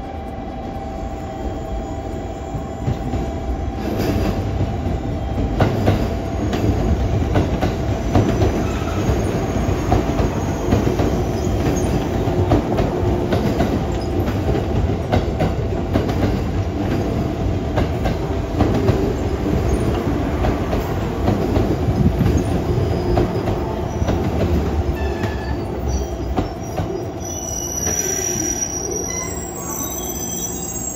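JR Kyushu 415-series electric train pulling into the platform, its wheels rumbling and rattling over the rails. The sound grows louder from about four seconds in, and a high brake squeal comes in near the end as the train slows to a stop.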